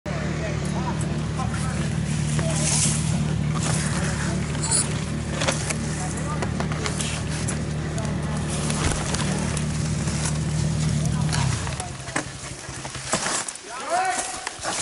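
Honda CRF dirt bike's single-cylinder four-stroke engine idling steadily while the bike lies on its side, then cutting out suddenly near the end. Scattered knocks and scrapes of handling sound over it.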